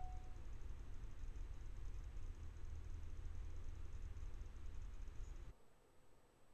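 Steady low rumble and hiss of a trail camera's own microphone recording, with a faint high whine above it, cutting off abruptly about five and a half seconds in.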